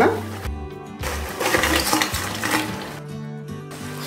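Crab pieces tipped into a clay pot of hot masala gravy and stirred with a wooden spatula, sizzling and hissing in the oil, loudest in the middle of the stretch, over background music with steady tones.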